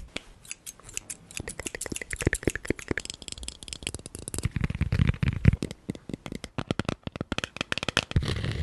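Close-miked tapping and scratching of small handheld objects (a pen, then a thin metal pick) on and near a microphone's mesh grille: many quick sharp clicks, with a run of heavier thumps about five seconds in.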